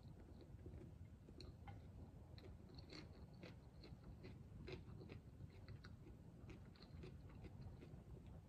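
Faint chewing of raw vegetables close to the microphone, heard as soft, irregular clicks.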